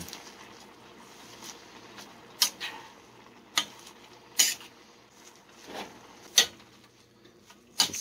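Metal spoon stirring chopped leafy greens in a stainless steel pot: a soft rustle of leaves, broken by about six sharp clinks of the spoon against the pot.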